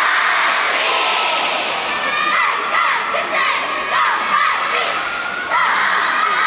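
Large crowd of high, young voices cheering and shouting without a break, with a surge of louder shouting just before the end.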